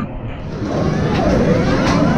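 Steady din of arcade machines, with electronic sound-effect tones sliding up in pitch near the end. A man laughs briefly in it.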